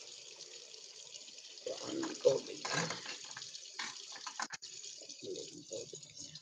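Quiet kitchen handling at a counter: a few light clicks and knocks as things are moved and set down, over a faint steady hiss, with a soft low voice now and then.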